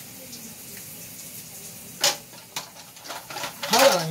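A steady faint hiss, then a sharp click about halfway through and a few softer knocks from small items being handled at a counter. A woman's voice starts just at the end.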